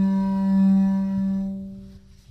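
Double bass playing a bowed harmonic: one sustained, clear high note that fades out near the end.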